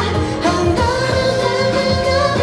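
A male singer singing a K-pop song into a handheld microphone over a pop backing track with a steady, heavy beat.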